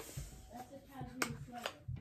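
A few sharp plastic clicks as a small instant camera is handled and its battery compartment worked, with faint mumbling underneath.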